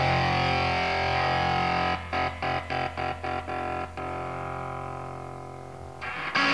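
Raw rehearsal-room cassette recording of an early-'80s hardcore punk band playing distorted electric guitar: a held chord, then about two seconds of choppy stop-start stabs, about four a second, then a chord left to ring and fade.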